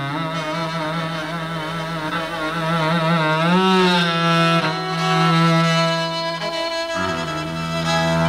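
Indian cello bowed in a slow, ornamented melody with wide vibrato and sliding notes. The line rises a little past the midpoint, then breaks off and settles onto a new lower held note near the end.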